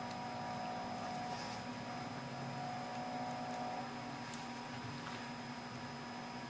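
Steady low background hum with a few faint steady tones, the room noise of a quiet indoor recording. There is a faint tick a little past four seconds in.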